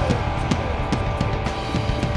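Hard rock band playing live, taken straight from the soundboard mix: drum kit hitting a steady beat about four strikes a second under held guitar and bass notes.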